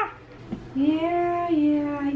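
A woman singing in a high voice: a long held note that steps down to a lower note about halfway through.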